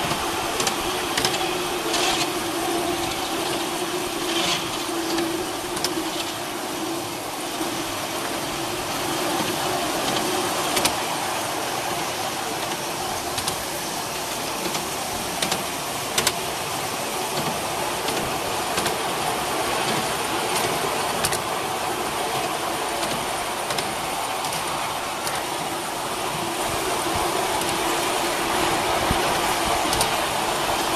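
Miniature railway train running along its track, heard from on board: a steady running noise with a low hum and scattered short clicks from the wheels on the rails.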